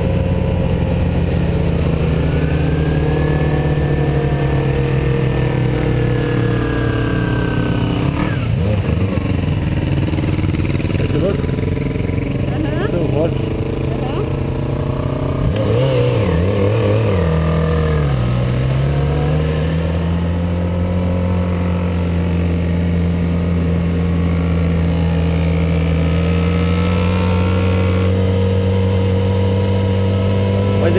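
Motorcycle engine running steadily under way, heard from the rider's own bike. The engine note drops and recovers about a third of the way through, and again dips and climbs back just past halfway.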